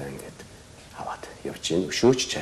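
Speech only: a man talking quietly in a few short phrases.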